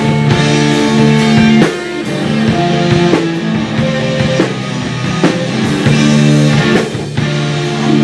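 Live rock band playing an instrumental passage of electric guitar, bass guitar and drum kit, loud and full. It drops back a little under two seconds in, then builds again.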